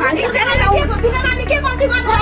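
A woman talking heatedly with other voices around her in a crowd, over a low steady hum that grows louder about half a second in.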